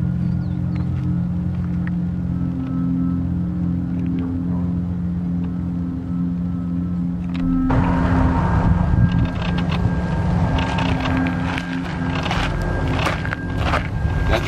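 Vehicle engine idling steadily. About eight seconds in, a louder, harsh hissing noise joins it and carries on, with crackling near the end.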